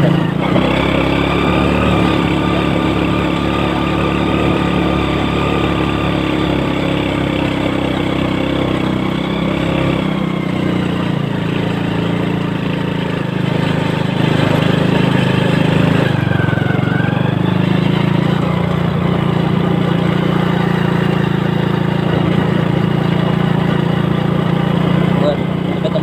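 Engine of a 1993 Honda Astrea Grand, a small air-cooled four-stroke single, running under load as the motorcycle is ridden up and down hill lanes; a steady droning note whose pitch and strength shift about ten seconds in and again a few seconds later.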